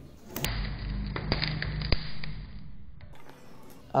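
A 12 V 64 A car alternator spun by a pulled rope as a generator test: a low whir for about two and a half seconds, with a few sharp clicks in the middle, fading before it stops.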